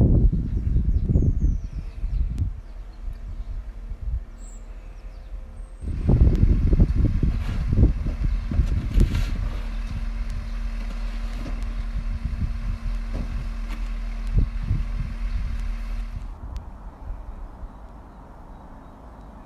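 Truck-mounted aerial lift at work: its motor running with a steady hum, under irregular low rumbles. The sound drops away sharply about two seconds before the end.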